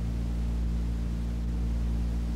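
Steady low electrical hum with several constant tones stacked above it, under an even hiss: the background noise of a 1950s recording in a pause between words.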